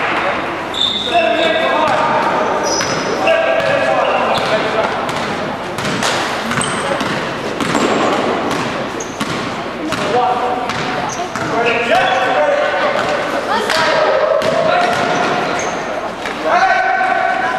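Live basketball play in a large sports hall: the ball bouncing on the court in repeated knocks, short squeaks of sneakers on the floor, and players' indistinct calls, all echoing in the hall.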